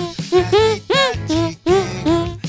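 Hand music: a melody played by squeezing air out of clasped, cupped hands. It comes as a quick run of short pitched notes, each bending up and then down in pitch.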